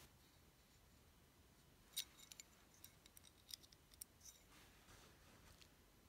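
Near silence, broken by a few faint, sharp clicks as a gold-tone metal hoop earring and its wire hook are handled in the fingers. The sharpest click comes about two seconds in.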